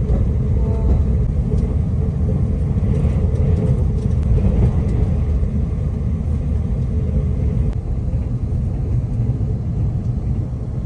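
Steady low rumble of a moving passenger train, heard from inside the carriage.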